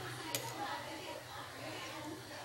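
Faint background voices over a low steady hum, with one sharp click about a third of a second in.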